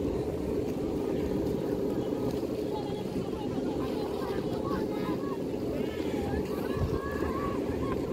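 Strong wind buffeting the microphone in a steady low rumble. Through it come scattered shouts and calls from people on the beach, more of them in the second half.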